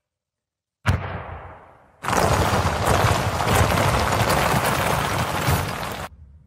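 Explosion-like sound effects: a sudden boom about a second in that fades away, then a long, loud rush of noise from about two seconds in that drops off abruptly at the end.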